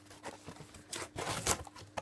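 Cardboard delivery box being opened by hand: its flaps pulled back and handled, with a quick run of scraping, rustling cardboard noises in the second half, loudest about one and a half seconds in.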